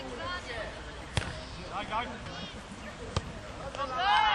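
A football kicked twice, two sharp thuds about two seconds apart, among shouts from players and onlookers.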